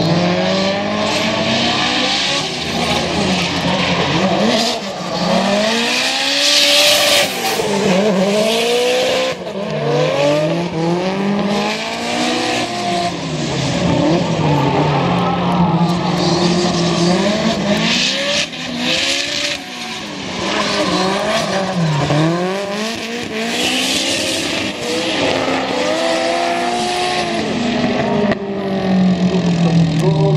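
Two drift cars in a tandem run, their engines revving up and down every second or two as the drivers work the throttle through the slides. Their tyres squeal loudly at the same time, loudest in a few long stretches.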